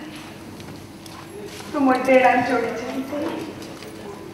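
A woman's voice reciting a line of Odia verse in a single phrase about halfway through, with a quieter stretch before it and a faint steady low hum underneath.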